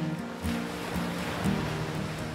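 Acoustic guitar music: single plucked notes about every half second, with a soft wash of ocean surf beneath.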